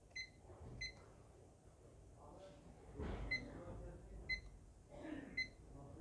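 Uni-T UT61B+ digital multimeter beeping five times, each a short high electronic beep, as its rotary selector dial and buttons are worked. Faint handling and switch noise comes between the beeps.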